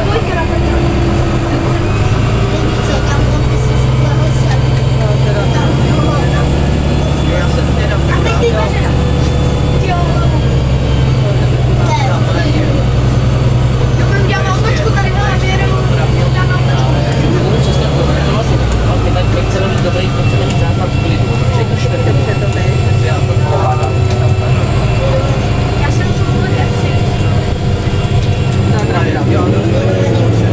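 Diesel engine of a Karosa B961 articulated city bus heard from inside the passenger saloon, a steady low drone whose note drops about two-thirds of the way through, with passengers chatting over it.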